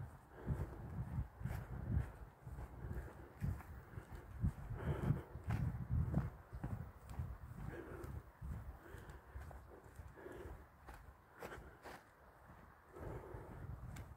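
Footsteps of a person walking along a grass path: irregular low thuds.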